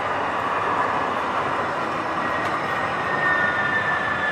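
TRAX light rail train passing a grade crossing at close range: a steady rush of wheel and running noise with a thin, high tone that sags slightly in pitch in the second half.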